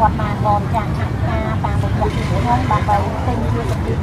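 Conversational speech over a steady low rumble of street traffic.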